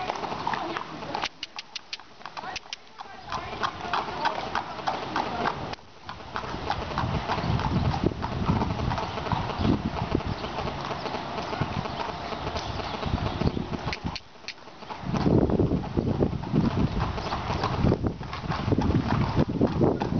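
Hooves of a racehorse walking on a packed dirt and gravel yard as it is led in hand.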